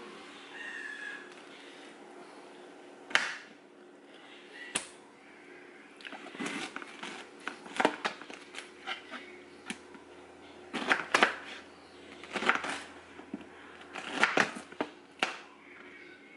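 A kitchen knife cutting up a fresh pineapple on a cutting board: irregular clusters of sharp knocks and crunchy slicing as the blade goes through the fruit and strikes the board, with short pauses between cuts.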